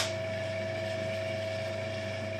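Benchtop drill press running steadily: an even motor hum with a constant whine.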